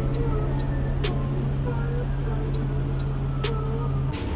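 City bus engine running with a steady low hum as the bus pulls in, with faint scattered clicks over it; the hum cuts off at the end.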